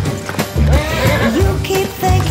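A pony whinnies for about a second, starting about half a second in, over background music with a steady beat.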